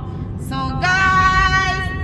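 A woman singing into a handheld karaoke microphone with a built-in speaker, coming in about half a second in and holding one long steady note, over the low road rumble of the car cabin.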